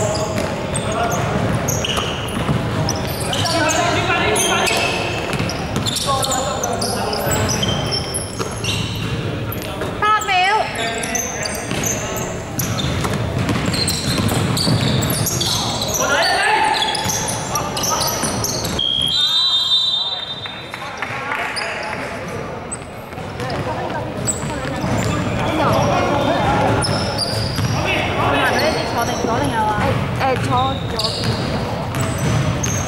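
Basketball game on a wooden court in a large indoor hall: the ball bouncing as it is dribbled and passed, players' running feet and shouted calls, all echoing in the hall. About two-thirds of the way through, a brief high steady tone sounds.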